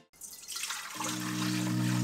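Liquid pouring from a saucepan into a steel stand-mixer bowl, an even hiss of splashing. Soft held music notes come in about a second in.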